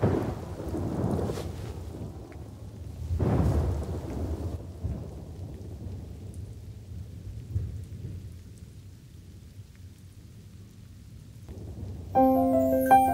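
Thunder rumbling twice, once at the start and again about three seconds in, over a bed of rain, the whole storm dying away to a faint hiss over the last few seconds.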